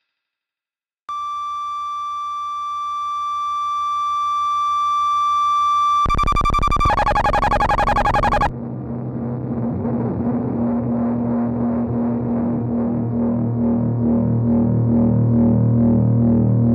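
Electronic music from a synthesized electroacoustic piece. After about a second of silence, a steady synthesized tone with many overtones enters and slowly grows louder. About six seconds in it breaks into a harsh, rapidly pulsing texture, which a couple of seconds later gives way to a lower, throbbing drone.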